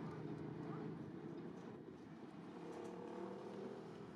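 Faint, steady street noise of a large city square: a low hum of distant traffic.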